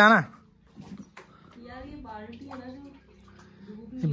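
Mostly speech: one loud word at the very start, then quieter talk from farther off, with a few faint knocks about a second in.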